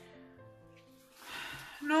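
Quiet background music with long held notes.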